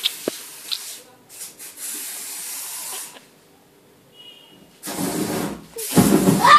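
Aerosol spray can hissing in short bursts. Near the end comes a louder, fuller burst of about a second as the spray is lit into a fireball.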